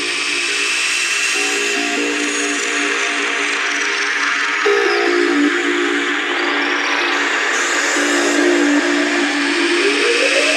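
Psytrance breakdown with no kick drum or bass. Sustained synth notes step between pitches over a hissy wash, and a rising sweep builds near the end.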